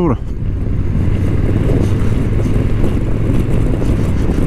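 Honda NT1100's parallel-twin engine running steadily at road speed, with a steady low hum under rumbling wind noise on the microphone.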